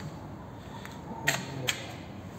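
Two sharp clicks a little under half a second apart, about halfway through, over a steady low background hum.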